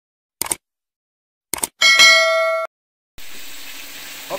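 Subscribe-button animation sound effect: a few short mouse clicks, then a bright bell ding that rings for under a second. A steady hiss begins near the end.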